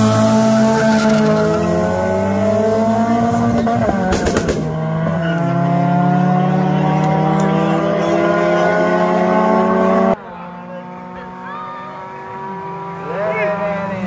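Two small front-wheel-drive race cars launching with wheelspin and accelerating hard, engines climbing in pitch, a gear change about four seconds in, then another long climb. About ten seconds in the sound drops sharply and the engines are heard fainter.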